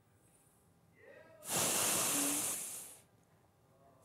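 A woman's long, hard breath through the hands held over her mouth, one breathy rush lasting about a second and a half, in shock.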